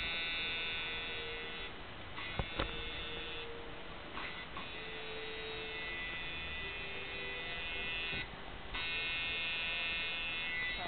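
Electric tattoo machine buzzing as it inks skin, running in stretches of a few seconds and stopping briefly about two, four and eight seconds in.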